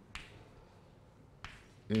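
Chalk tapping on a blackboard while writing: two sharp taps about a second and a half apart, with faint chalk scratching between.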